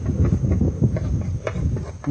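Diced onion sizzling in hot olive oil in a frying pan, stirred with a wooden spoon: an irregular crackle with small pops and scraping.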